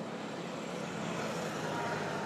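Steady outdoor background noise with no distinct events, a fairly even hiss-like wash at moderate level.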